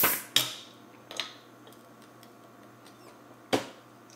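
Metal hand tool clicking and scraping against the metal cap of a glass soda bottle as it is pried at. There are four sharp clicks: one at the start, one about half a second in, one just over a second in and one near the end.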